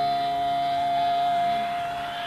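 A single sustained electric guitar note held steady during a live heavy-metal guitar solo, fading out about a second and a half in.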